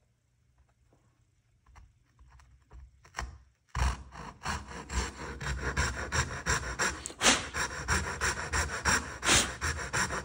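Coping saw cutting into a pine board: a few faint taps as the blade is set to the line, then, about four seconds in, quick, steady back-and-forth sawing strokes.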